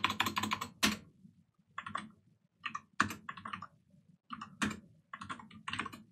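Typing on a computer keyboard: a quick run of keystrokes in the first second, then short irregular bursts of key presses with pauses between them.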